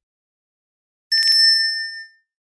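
About a second in, a bright bell-like ding sound effect: a quick strike or two, then a clear ring that fades away.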